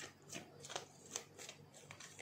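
Tarot cards being shuffled and handled: a run of soft, irregular card flicks, a few each second.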